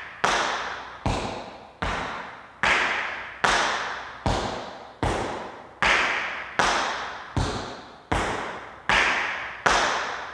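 Metal taps on tap shoes striking a wooden floor in a slow cramp roll: toe, toe, heel, heel, alternating right and left feet. About thirteen single, evenly spaced taps come roughly three quarters of a second apart, each ringing on in the room.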